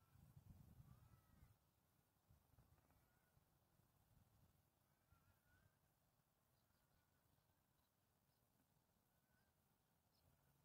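Near silence: a faint low wind rumble in the first second and a half, then only faint, scattered high chirps of distant birds.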